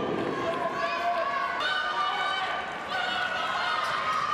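Handball game court sound: players running on the hard court with sneakers squeaking in short high squeaks, over the steady murmur of the arena crowd.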